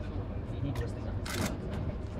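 Indistinct voices of people talking close by over a steady low rumble, with one short hiss about a second and a quarter in.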